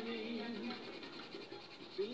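Colored pencil scratching on paper as an area is shaded in, over progressive rock music with a singing voice.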